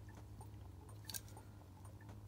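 Quiet handling noise of a small die-cast toy car being turned over between fingers, with faint ticks and one sharp click about a second in, over a low steady hum.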